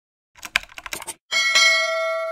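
Subscribe-button animation sound effects: a quick run of sharp clicks, then, about a second and a quarter in, a notification-bell ding that rings on as a steady chime.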